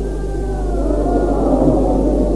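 Drawn-out, gliding human voices from an old tape recording, over a steady low hum.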